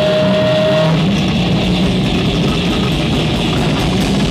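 A live rock band playing through amplifiers: electric guitars and bass guitar, with one steady note held for about the first second.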